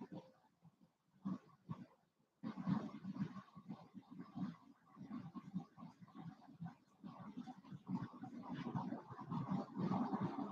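Strands of pink shell beads clicking and rustling against each other as they are handled. The faint, irregular clatter is sparse at first and becomes busier from about two seconds in.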